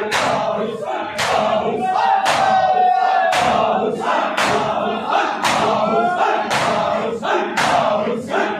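A large crowd of men doing matam: bare-handed chest beats struck in unison at a steady beat of about two a second, under loud massed male voices chanting and calling out together.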